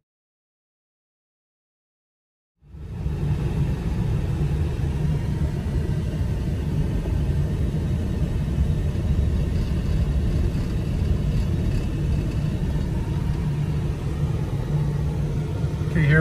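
Silence for about two and a half seconds, then steady cabin noise inside an electric-converted Ford F-150 rolling at low speed: an even low rumble of tyres and drivetrain with no engine running.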